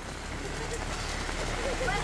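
Steady rain falling, with a low, steady engine hum from a vehicle running underneath.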